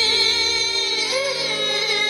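Female vocalist holding a long note with a wavering vibrato, then breaking into quick ornamented melodic turns about a second in, over steady instrumental accompaniment, in a live performance of a qawwali-style Hindi-Urdu song.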